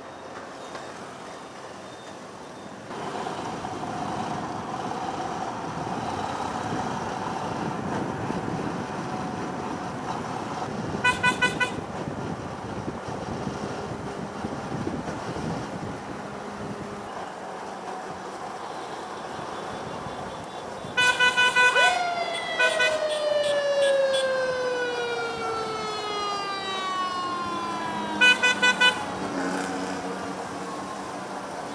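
Vehicle horns beeping in quick bursts over steady road noise: a run of short beeps about eleven seconds in, a longer blast around twenty-one seconds, and another run of short beeps near the end. After the long blast, a siren-like tone slides slowly down in pitch for several seconds.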